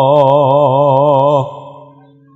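Male campursari singer holding one long sung note with a wide, even vibrato. The note stops about one and a half seconds in and dies away with an echo.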